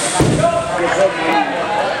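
Spectators' voices talking and calling out, with a single dull low thump just after the start.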